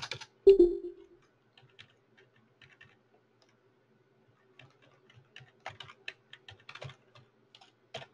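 Typing on a computer keyboard: scattered keystrokes that come faster in the second half, with one louder thump about half a second in.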